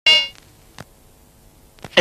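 A single bright metallic clang at the very start, ringing briefly with a bell-like tone and dying away within a third of a second. Then only a faint steady hum with two soft clicks.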